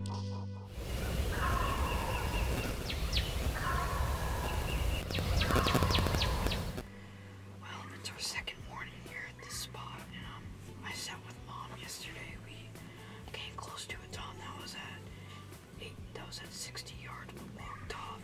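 Wild turkey gobbling three times, each a short rattling call, over loud background noise; the sound drops off sharply about seven seconds in.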